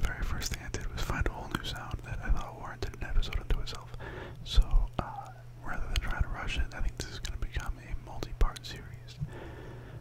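Close-miked whispered speech, with many small sharp clicks between words and a steady low hum underneath.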